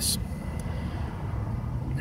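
Steady low outdoor background rumble with a faint thin high tone, opening with a brief hiss.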